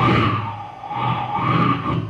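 Beatboxer's vocal sound effect imitating an engine: one long held drone that starts suddenly, swells twice and fades near the end.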